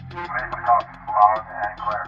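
A voice talking over a two-way radio, over background music with a fast, even ticking beat.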